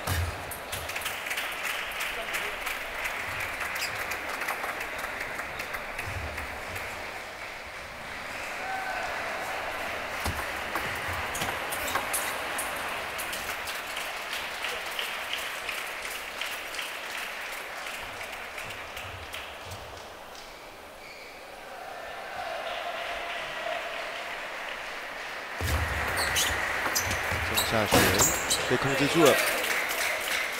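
Table tennis play: the ball clicking off the table and the rubber bats in quick strokes, over the murmur of a large hall. In the last few seconds, after a point ends, there is a louder burst of shouting and clapping.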